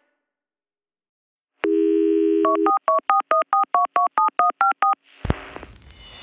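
A telephone dial tone sounds for about a second, then a number is dialled in about a dozen quick touch-tone beeps. Just after the last beep a short burst and a rising hiss begin.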